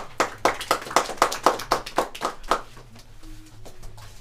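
A small audience clapping, about five even claps a second, dying away about two and a half seconds in.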